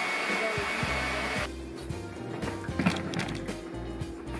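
Countertop blender running with a steady high whine, blending a chunky orange gelatin mixture, then cutting off about a second and a half in. Background music with a steady beat carries on after it.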